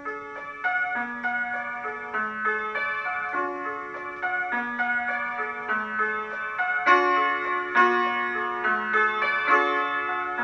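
Solo piano playing: a melody in chords over a low note that changes about once a second, starting at once.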